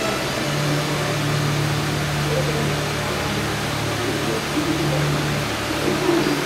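A low held musical note, like a soft background drone, under a steady hiss; the note steps up in pitch about half a second in and falls back near the end.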